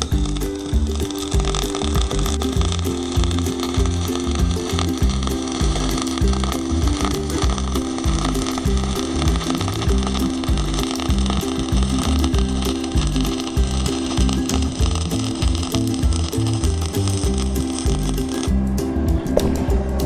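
Background music with a steady beat, over the hiss of a Canaweld MIG/Stick 202 arc welding stainless steel with 0.045-inch flux-cored wire. The arc stops about a second and a half before the end, leaving the music.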